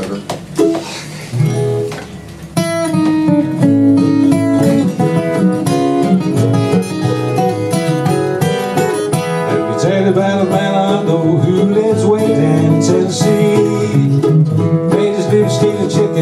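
Two acoustic guitars and a mandolin playing an instrumental country-folk intro. A few loose picked notes come first, then all three come in together about two and a half seconds in and keep up a steady picked rhythm.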